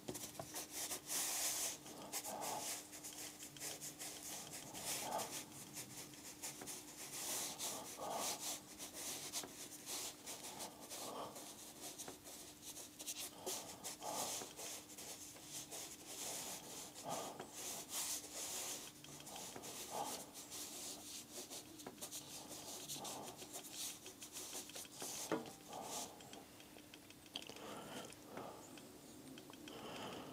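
Paintbrush scrubbing and stroking across watercolour paper in irregular short scratchy strokes, with a faint steady hum underneath.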